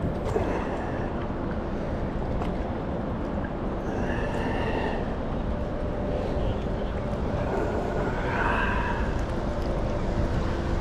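Wind buffeting the microphone with a steady low rumble, with faint splashing of a paddle in the water, a little clearer around four and eight seconds in.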